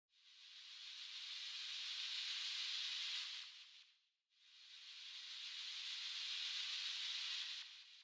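Two swells of hiss-like noise from a song's intro, each fading in over about three seconds and dying away, the first near the middle and the second at the end.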